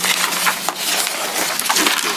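Paper rustling and crinkling close to a microphone, a dense run of irregular crackles like pages being handled and turned.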